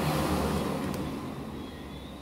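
Steady rushing background noise with a low hum, loudest at the start and slowly fading over about two seconds.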